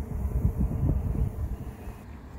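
Low, uneven rumbling of wind buffeting the microphone outdoors, easing a little toward the end.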